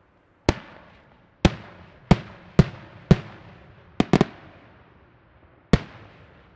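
Aerial firework shells bursting overhead: a string of about eight sharp, echoing bangs at irregular intervals, with a quick double bang about four seconds in.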